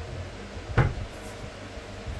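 A single sharp thump or knock a little under a second in, over a steady low hum.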